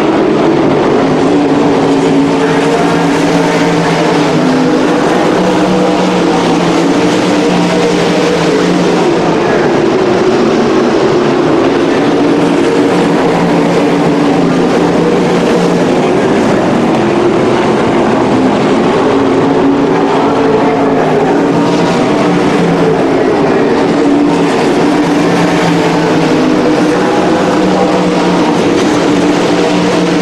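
Several winged sprint cars' V8 engines at racing speed on a dirt oval. It is a loud, continuous engine note whose pitch rises and falls as the cars circle the track.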